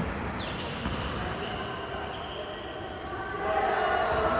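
A basketball bouncing on a sports-hall floor, with voices echoing in the hall.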